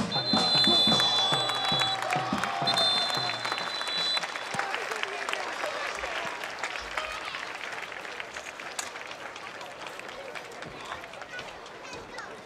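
Referee's whistle blown in two long blasts, the first about two seconds and the second about a second and a half, marking full time; crowd applause and cheering run under it and die away afterwards.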